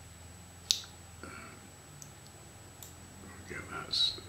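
A single sharp click a little under a second in, over a steady low room hum, followed by a few faint ticks.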